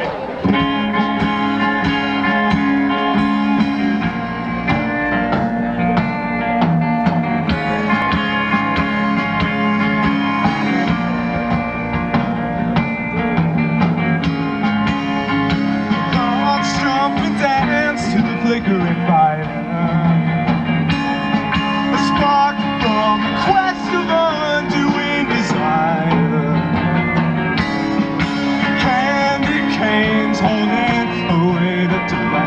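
Live rock band playing the instrumental opening of a song: electric guitars, bass and drum kit, with a mandolin, at a steady loud level. A wavering lead melody rises above the band in the second half.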